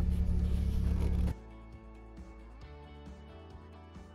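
Bedford Bambi camper van's engine idling steadily, heard from inside a cab sound-deadened with foam and carpet in the doors and ceiling; about a second in it cuts off abruptly and soft background music follows.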